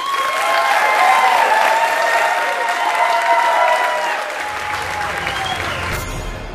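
Audience applauding at the close of a talk. About four and a half seconds in, low music comes in under the clapping.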